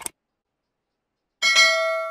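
A short mouse-click sound effect, then about a second and a half in a bright bell chime with several ringing tones that fades over a little under a second: the notification-bell ding of a subscribe animation.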